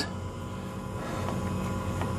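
A steady low machine hum made of several fixed tones that does not change, with no clear tool clicks or knocks over it.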